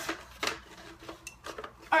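A few light clicks and knocks from a plastic Nerf N-Strike Elite Retaliator blaster being handled: one sharp click right at the start, another about half a second in, then fainter taps.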